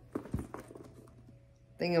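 Handling noise from a fabric tote bag with a gold-tone chain-and-leather strap: a few short clicks and a light knock in the first second, then faint rustling.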